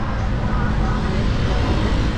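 Steady city traffic noise heard from a moving bicycle, under a heavy, unsteady low rumble of wind on the microphone.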